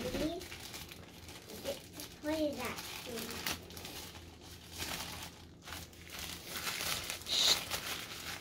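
Hands unwrapping a small part from white packaging wrap: irregular crinkles and crackles, with a sharper cluster near the end.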